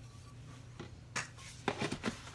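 Quiet room tone with a steady low hum, then a few short light knocks or clicks in the second half.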